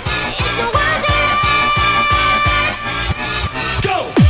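Makina / UK bounce electronic dance track: a fast, steady kick drum, about three beats a second, with a held synth chord that glides in about a second in and stops a little before the end.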